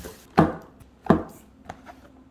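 Cardboard shipping carton and a small paperboard product box being handled on a wooden tabletop. There are two sharp knocks about 0.7 s apart, followed by two faint taps.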